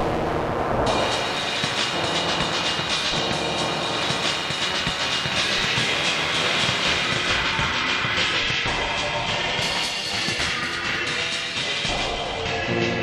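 Algorithmic electroacoustic computer music made in SuperCollider: a dense, steady texture of rapid clicking, grainy sounds with a bright high layer that comes in about a second in.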